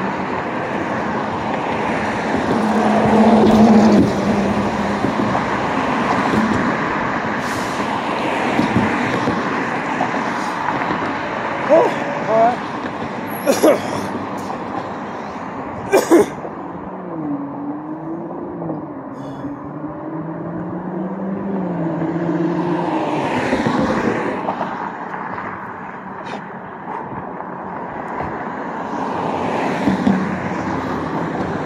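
Street traffic: steady road noise with vehicles driving past. A few sharp knocks come near the middle, then an engine's wavering hum runs for several seconds as a van passes.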